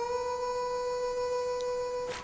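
Harmonica playing one long, steady held note.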